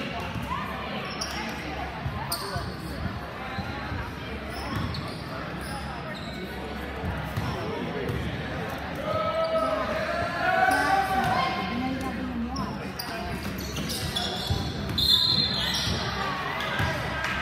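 A basketball bouncing on a gym floor, repeated short thuds from dribbling and play, with voices of players and spectators echoing in the large hall.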